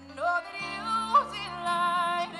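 Woman singing a slow worship song live over the band's sustained chords. Her voice comes in just after the start with long, bending held notes, and the chord underneath changes about half a second in.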